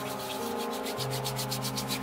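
Hands rubbing and ruffling hair close to the microphone: a quick run of dry, scratchy rubbing strokes.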